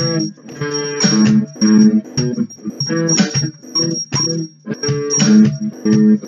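Electric guitar strumming chords in a choppy rhythm, separate strokes with short gaps between them, with a thin steady high whine underneath.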